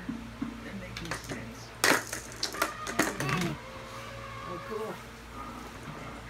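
Small hard knocks and clicks of toys handled on a baby walker's plastic activity tray, the loudest about two seconds in and a few quicker ones just after. Soft voice sounds come between them.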